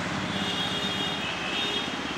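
Steady street traffic and road noise, with a faint high-pitched tone running through most of it.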